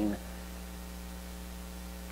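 Steady electrical mains hum: a low, unchanging drone with a faint buzz of evenly spaced overtones above it, heard plainly once the speech stops.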